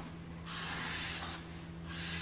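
Felt-tip marker colouring on paper: scratchy back-and-forth strokes, one stroke about half a second in and another starting near the end, over a faint steady hum.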